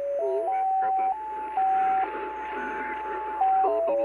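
MiniSDR shortwave receiver in upper-sideband mode, tuned across an AM broadcast: the station's carrier comes through as a whistle tone that steps up in pitch with each click of the tuning knob (100 Hz steps), dips once, holds, then steps back down near the end. Faint broadcast speech runs underneath.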